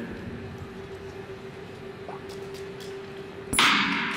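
Hushed speed skating oval with a steady hum while the skaters hold still at the line, then the starting gun fires sharply about three and a half seconds in, followed at once by a loud, sustained rush of crowd noise as the race begins.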